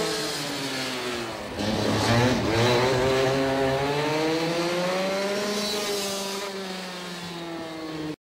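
Racing go-kart engine running: its pitch drops for about two seconds, then climbs steadily as the kart accelerates, and eases off again near the end.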